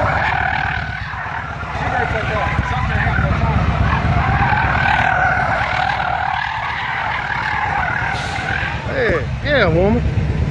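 Car tires squealing almost without a break as a Ford sedan spins donuts, the squeal wavering up and down in pitch over a low rumble. Near the end, a person shouts.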